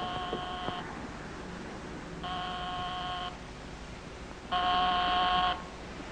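Electric doorbell buzzing three times, each ring a steady tone lasting about a second with a second or so between rings, the last ring louder.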